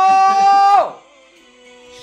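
A long, high sung note held over the song's music, rising slightly and cut off sharply just under a second in. The music then drops to a quiet, steady chord.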